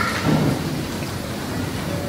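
Steady rushing noise with a low rumble underneath.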